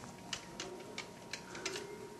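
Buttons of a desk telephone keypad being pressed one after another while dialling a number: a series of faint sharp clicks, about six in two seconds, at uneven spacing.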